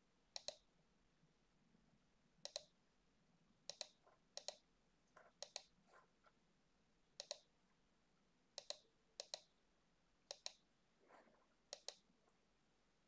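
Computer mouse button clicking about ten times at irregular intervals, each click a quick pair of sharp ticks, with near silence between them.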